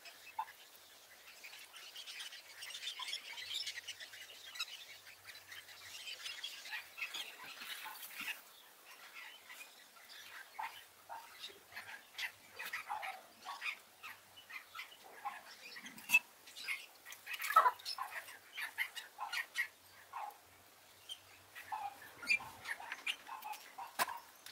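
Small splashes and drips of liquid rust remover, with light clicks of pliers and steel block-plane parts, as parts are lifted out of a plastic tub and laid on a rag. A faint hiss runs through the first several seconds, and the clicks and splashes come thick from about nine seconds on.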